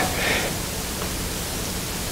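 Steady hiss of background noise with a faint low hum underneath.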